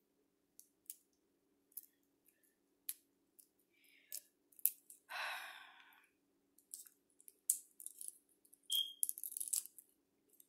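Hard-boiled egg being peeled by hand: scattered small clicks and crackles of shell breaking and coming away, denser near the end, with a short rushing sound about five seconds in.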